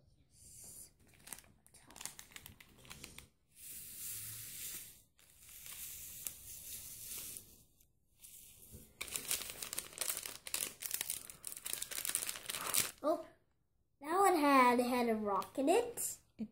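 Thin clear plastic cup crinkling and rustling in bouts as it is squeezed and scraped out over a bowl, the crinkling densest in the last third.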